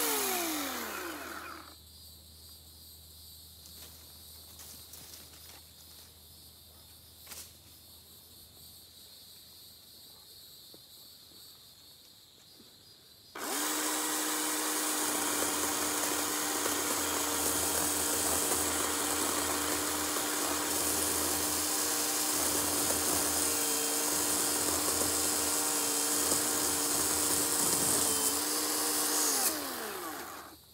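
Battery-powered electric chainsaw: its motor winds down about a second in, then after a quieter pause of roughly twelve seconds it starts abruptly and runs at a steady pitch for about fifteen seconds before winding down again near the end.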